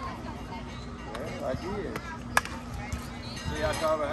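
A softball bat hits a pitched ball with one sharp, loud crack about two and a half seconds in, followed by spectators shouting.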